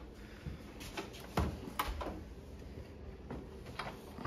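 A few light knocks and clicks, about five spread over the few seconds, the strongest about a second and a half in, as a bicycle is wheeled through a hotel room doorway past the open door.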